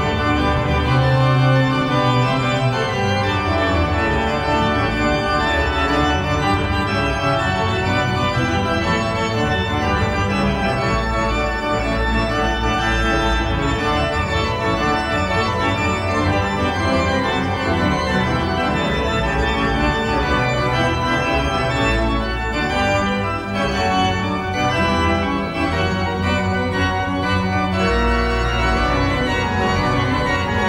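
Pipe organ playing a full passage on manuals and pedals: sustained, changing chords over deep pedal bass notes, sounding its reed stops.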